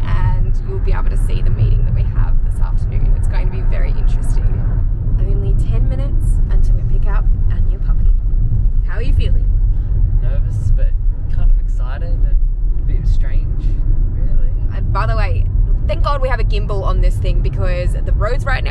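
Steady low rumble of road and engine noise inside a moving car's cabin, with bits of talking over it.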